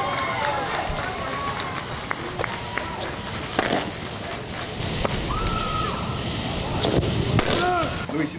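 Bullpen ambience of indistinct voices and chatter, with a few sharp pops of pitches hitting a catcher's mitt, the clearest about three and a half seconds in and two more near the end.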